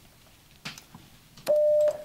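A short electronic beep: one steady tone, held for about half a second near the end. It is the loudest sound, preceded by a couple of faint clicks like keys on a computer keyboard.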